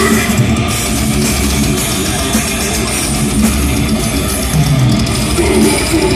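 Live metal band playing loud, with distorted electric guitars to the fore over bass and drums.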